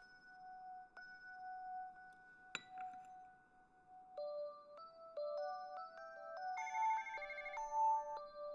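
A mobile phone's electronic ringtone: plain held tones at first, then about four seconds in a quick stepping melody of pure notes with a trilled high note. A light click comes about a second in and a sharper tick at about two and a half seconds.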